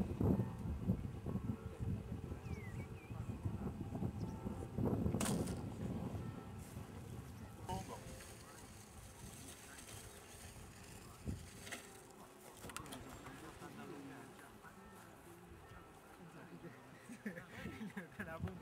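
Faint, indistinct voices talking, over an uneven low rumbling noise that swells and fades.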